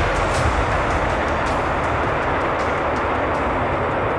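Twin rear-mounted jet engines of a Gulfstream business jet running at high power in reverse thrust on the landing rollout: a loud, steady rush of jet noise.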